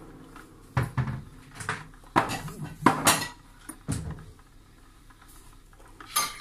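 Hard kitchen objects clattering: several sharp clinks and knocks over the first four seconds, then only low room sound.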